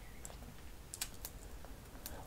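A few faint, short clicks in a quiet room, the clearest about a second in.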